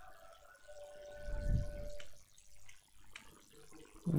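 A few faint, sharp clicks from a computer mouse and keyboard during copying and pasting, over low background noise with a faint steady tone for about a second.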